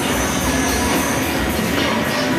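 Loud background music with a steady beat, over a noisy crowd.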